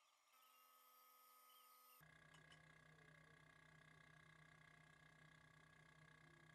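Near silence: a faint steady hum of background tone.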